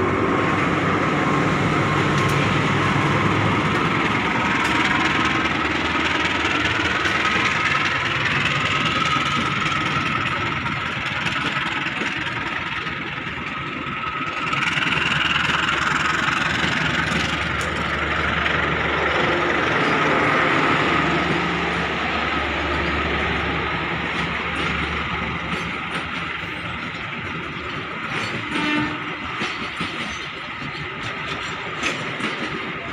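A CC 203 diesel-electric locomotive passes close by with its engine running, followed by a long string of passenger coaches rolling past on the rails. High whining tones slide in pitch during the first half.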